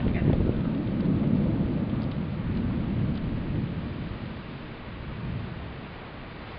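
Rolling thunder from a strong thunderstorm: a deep rumble that is loudest at the start and slowly dies away over the next few seconds.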